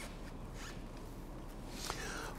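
Faint hiss and light rustling, with a small click near the end.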